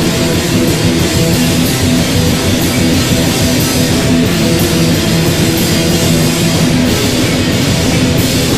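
Rock band playing loud and steady, with electric guitar and a drum kit.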